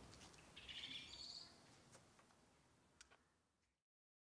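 Near silence: faint outdoor ambience with a few small clicks and one brief rising chirp about a second in, fading out to silence near the end.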